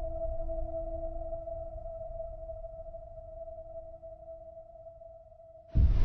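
Logo-intro sound design: a held, ringing tone over a low rumble slowly fades away, then a sudden loud impact hit with a long, rushing decay lands near the end.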